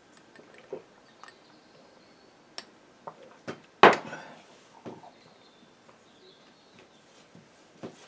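Scattered light clicks and taps of small hard objects being handled, with one sharper knock about four seconds in.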